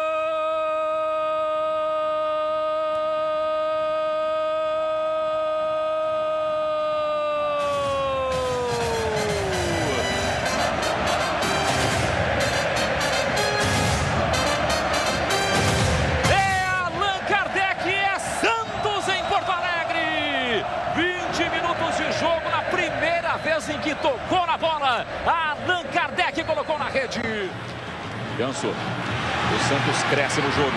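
A Brazilian TV football commentator's long drawn-out goal shout, held on one steady pitch for about eight seconds and falling away about ten seconds in. It is followed by a dense burst of noise and then fast, excited voice over music.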